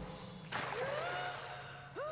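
Soundtrack of an animated episode with deliberately altered audio: a rushing noise, then a cartoon girl's drawn-out cry that rises in pitch and holds, about half a second in, with a second short rising-and-falling cry near the end.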